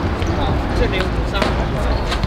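Players calling out across an outdoor hard court, with several sharp knocks of a football being kicked and bouncing, over a steady low rumble.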